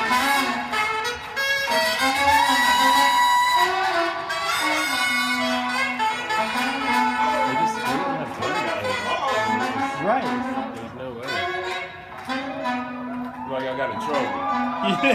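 Live soul-funk band music led by a horn section of saxophones, trumpet and trombone playing held notes, heard as a concert recording played back through speakers in a room.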